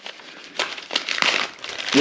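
Paper envelope crinkling and crackling as it is pulled and pried open by hand, in irregular scratchy bursts that grow louder about half a second in; the envelope is taped shut.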